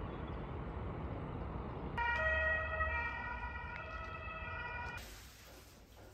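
Open-air town ambience with wind noise. From about two seconds in, a distant siren-like horn sounds a steady chord of several pitches for about three seconds. Near the end it all drops to a quiet indoor hush.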